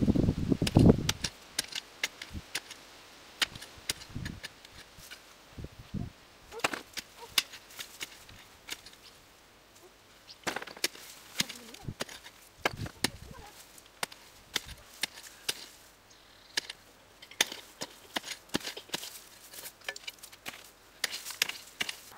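A short-handled hand hoe chopping and scraping into a heap of loose soil while potatoes are dug out, in irregular strokes with small sharp clicks of clods and stones. A few heavier thuds come near the start and again about eleven to thirteen seconds in.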